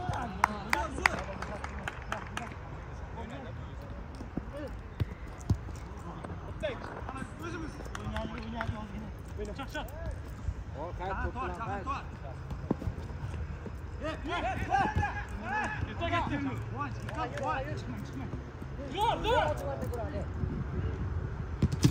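Football being kicked and bouncing on artificial turf: several sharp thuds scattered through, between players calling out to one another across the pitch.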